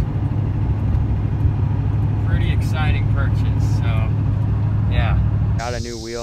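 Steady low drone of a pickup truck's engine and road noise heard from inside the cab while driving. Near the end it cuts suddenly to a high, steady cricket chorus outdoors.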